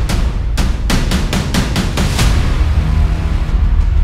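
Loud orchestral trailer score over a deep, sustained low rumble, with a quick run of sharp percussion hits, several a second, in the first half before it settles.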